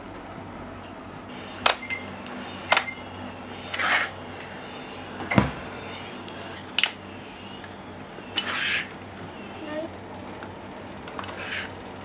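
Adjustable dumbbells and their weight plates being handled in and out of their cradles: a string of separate metallic clanks and clicks, two of them ringing, with short sliding scrapes between and one heavier thump about five seconds in.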